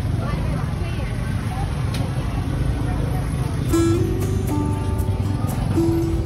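Busy market ambience: a steady low rumble of traffic with faint voices. About two-thirds of the way in, background music with held notes and plucked strikes comes in over it.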